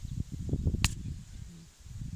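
Wind buffeting the microphone in an open field as an uneven low rumble, with one sharp click a little under a second in.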